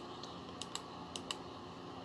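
Laptop clicking: about six light, sharp clicks in three quick pairs, as text on the screen is being selected.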